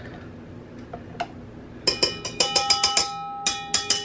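Wire whisk tapped against a stainless steel mixing bowl to knock off whipped egg-white meringue: a quick run of sharp metallic taps starting about two seconds in, the bowl ringing after them.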